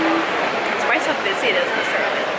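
Indistinct voices, with short rising and falling calls about a second in and again shortly after, over a steady hiss of background noise.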